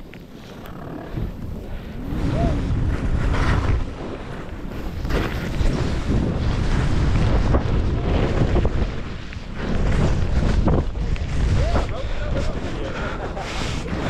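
Wind buffeting the microphone while skiing fast downhill. Skis hiss and scrape through chopped-up snow, swelling several times with the turns.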